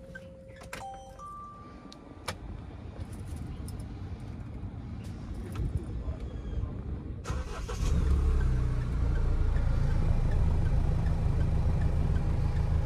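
A few electronic dashboard chimes sound near the start. Then the Mahindra Thar's four-cylinder engine is started: it catches about seven to eight seconds in and settles into a steady idle.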